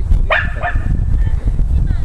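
A rubble-search dog barks once, sharply, about a third of a second in, giving its alert at the spot where it has stopped. The bark sits over a steady low rumble.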